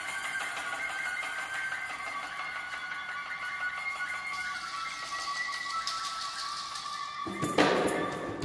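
Wind instruments holding long, steady notes that move to new pitches a few times, with a drum struck once, loudly, near the end.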